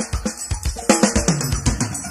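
Live forró band's drum kit playing a fill of quick snare and bass-drum hits to open a song, with a bass note sliding down near the end.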